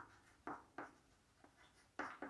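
Chalk writing on a chalkboard: a few faint, short scraping strokes.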